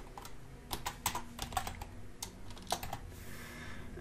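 Computer keyboard typing: a run of irregular key clicks, bunched mostly in the first three seconds.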